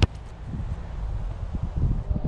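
A football kicked once with the outside of the boot: a single sharp thud right at the start. Then wind buffeting the microphone.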